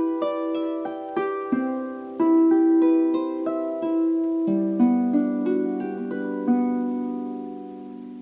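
Double-strung harp plucked by hand: a short syncopated phrase of notes ringing over one another, ending in a low chord that rings on and fades away.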